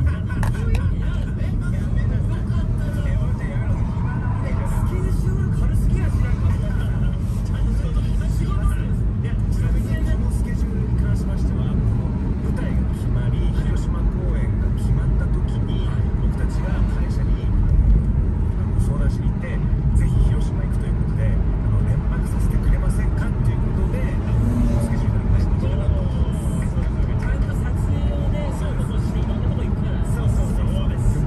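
Steady low rumble of a car's cabin while driving in traffic: engine and tyre noise, with faint muffled voices underneath.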